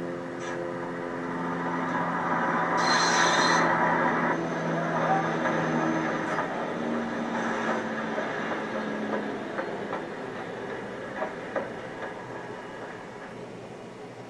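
A train going by on the track: a steady drone and the noise of the wheels on the rails build to their loudest about three seconds in, with a brief high whine, then slowly fade.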